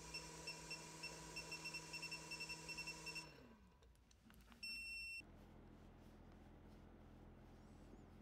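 A cordless drill running faintly and steadily with a light pulsing whine for about three seconds, then spinning down with falling pitch. About a second and a half later a single short, high electronic beep sounds.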